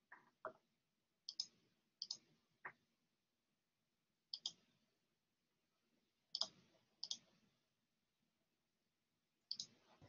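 Sparse, separate clicks at a computer as a class code is entered, most coming in quick pairs a fraction of a second apart, with near silence between them.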